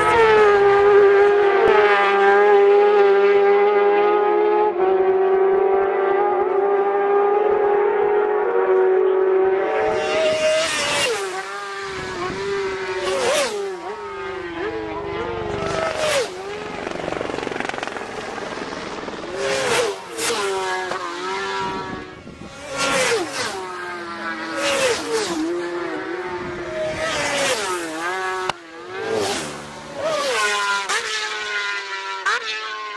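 Racing motorcycles passing at speed one after another in the second part, each a sudden loud burst of high-revving engine whose note bends through gear changes and falls away as it goes by. A steady high engine-like note holds before the first pass.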